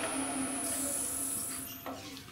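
Wood lathe running without cutting: a steady motor hum with a thin high whine, which cuts off near the end, followed by a short click.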